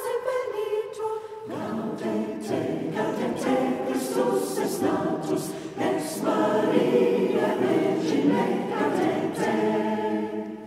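A choir singing in several parts, thinner at first and filling out with more voices about a second and a half in.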